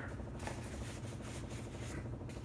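Faint rubbing and rustling of a paper towel being handled, as fingers are wiped.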